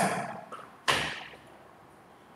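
A single sharp thump a little before one second in, fading away over about half a second.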